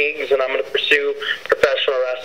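Speech only: a person talking in a narrow, radio-like voice, with two short sharp clicks about three-quarters of the way through.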